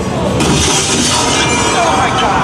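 A haunted-house scare sound effect: a sudden loud burst of high, hissing noise starts about half a second in and dies away over about a second, over a low, rumbling soundtrack.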